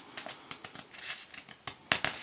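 Paper pages of a paperback colouring book being handled, with faint rustles and small crackles as the page corner is gripped and one sharper crackle near the end as it starts to lift.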